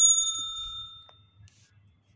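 A single bright bell ding, the sound effect of a subscribe-button notification bell. It is struck once and rings out, fading away within about a second.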